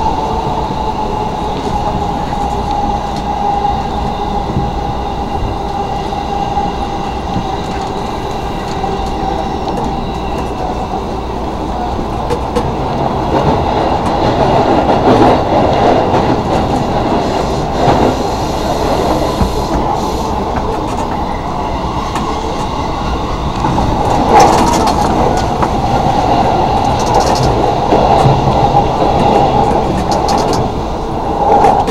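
Commuter train running, heard from inside the carriage: a steady rumble of wheels on rail with a sustained tone above it and a few sharp knocks from the track. It grows louder about halfway through and again near the end.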